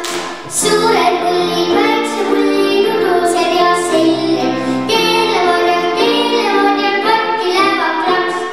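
A young girl singing a children's song into a microphone over an instrumental backing, with steady bass notes under the melody.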